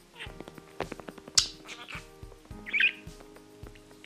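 Background music with a steady beat. Over it come short, sharp budgerigar chirps: the loudest about a second and a half in, and another near three seconds.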